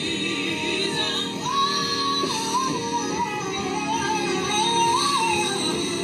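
A female gospel lead singer sings into a microphone over backing singers and accompaniment. From about a second and a half in, she holds a high, wavering line with bends and runs until near the end.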